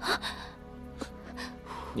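A man's sharp gasp right at the start, the reaction to touching a bowl of scalding-hot soup, over soft background music.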